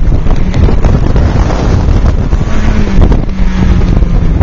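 Heavy wind buffeting on the microphone in an open-top 2000 Toyota MR2 Spyder, with the car's mid-mounted 1.8-litre four-cylinder engine running under load on an autocross course. A steady engine note comes through more clearly about two and a half seconds in.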